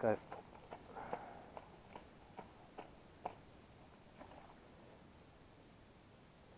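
Faint, scattered light clicks and a soft rustle from hands handling a float fishing rod and its line among reeds, thinning out after about four seconds.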